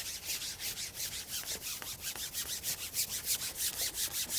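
Carbon fishing pole being shipped out, its length sliding and rubbing as it is pushed out, with a fast even swishing pulse of about six or seven a second.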